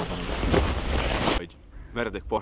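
Wind rushing over the microphone outdoors with faint voices under it; the noise cuts off suddenly about one and a half seconds in.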